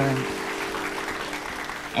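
Studio audience applauding over soft background music, the clapping easing off slightly toward the end.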